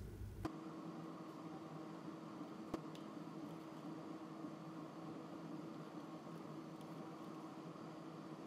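Faint steady room noise with a low hum, and a single soft click about three seconds in.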